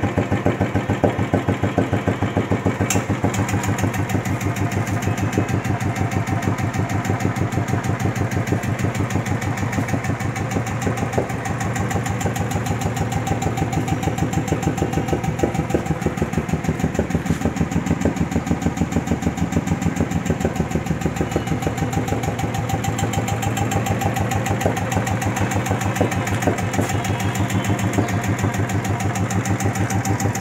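Royal Enfield Bullet's single-cylinder engine idling with a steady, even beat.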